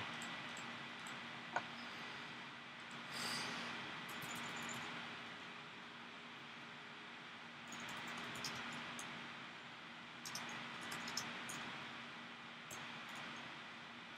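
Quiet room tone with a steady faint hiss and low hum, broken by scattered soft clicks of a computer mouse and keyboard typing.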